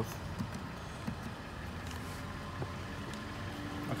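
Steady low rumble of the Cadillac DTS's V8 idling, heard from inside the cabin, with a few faint clicks.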